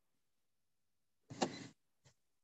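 Near silence, then about a second and a half in a single short burst of noise lasting about half a second, sharpest at its start, picked up over a video-call microphone.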